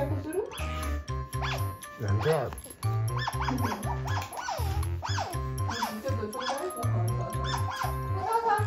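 Asian small-clawed otter making many short, high chirping squeaks while it begs for food, over background music with a steady beat.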